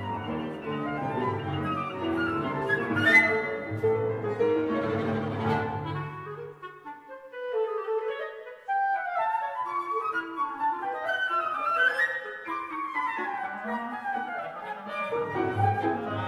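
Chamber ensemble of flute, clarinet, piano, viola and double bass playing a busy contemporary passage of running figures over a pulsing low bass line. Just under halfway through the low instruments drop out and a lighter stretch of flute and clarinet runs with piano follows; the bass returns near the end.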